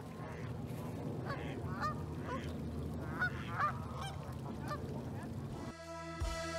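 A large flock of waterfowl on open water calling, many short honking calls overlapping one another over a steady low background rumble.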